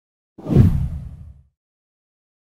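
A swoosh transition sound effect with a deep low rumble, starting abruptly about half a second in and fading away within a second.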